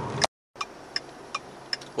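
Road noise inside a moving car cuts off abruptly about a quarter second in. After a brief silence comes a quieter steady hiss with a light, regular ticking, about two or three ticks a second.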